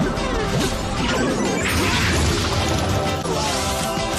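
TV show transition jingle: music layered with crashing, whacking and whooshing sound effects, with a broad whoosh about halfway through.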